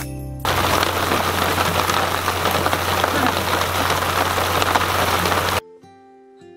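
Heavy rain falling, a dense steady hiss with a low hum beneath. It starts suddenly about half a second in and cuts off abruptly just before the end.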